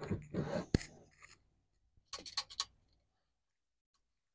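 A wooden 4x4 post being shifted on its base board, scraping with a sharp knock, followed by a quick run of clicks from a tape measure being pulled out.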